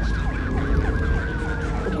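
Police siren in a fast yelp, rising and falling about four to five times a second, heard over the low rumble of the car cabin.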